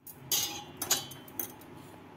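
Several sharp, light metallic clicks and clinks as things are handled at a stainless-steel gas stove; the first and loudest comes just after the start.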